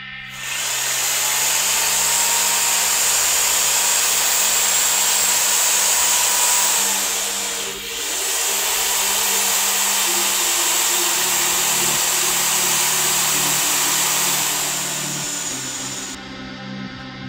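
Electric drill spinning a wire wheel brush against a rusty steel bicycle rim, scouring the rust off: a steady, loud, high scouring whir. It dips briefly a little before halfway, then picks up again and eases off near the end.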